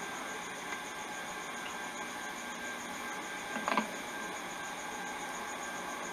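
Steady background hiss with a faint high tone pulsing several times a second, and one brief faint sound a little past halfway.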